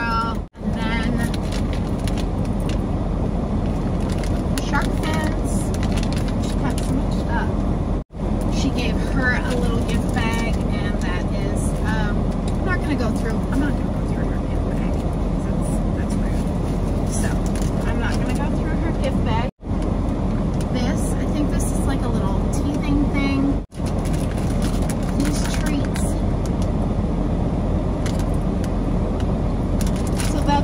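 Steady road and engine noise inside a moving van's cabin, with faint voices over it.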